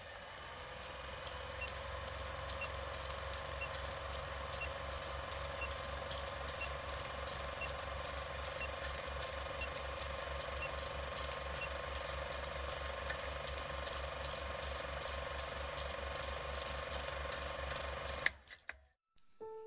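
Old film projector running: rapid, even clicking of the film mechanism over a steady hum, with a faint short beep about once a second for roughly the first ten seconds.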